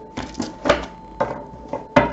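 A deck of tarot cards handled on a wooden tabletop: half a dozen light clicks and knocks of the cards, with a sharper knock near the end.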